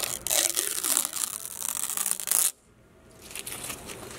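Clear protective plastic film being peeled off a stainless steel badge, crinkling and crackling, then cutting off suddenly about two and a half seconds in.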